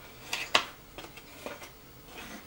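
Scissors snipping through a paper pattern: several short, crisp cuts, the sharpest about half a second in.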